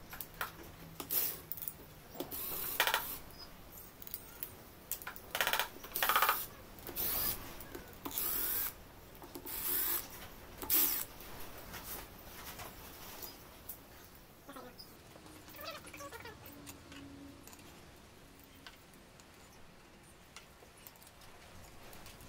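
Short bursts from a cordless power driver with some tool clatter, undoing the rocker arm bolts on an LS3 V8 cylinder head. The bursts come through the first half; after that there is only light handling noise.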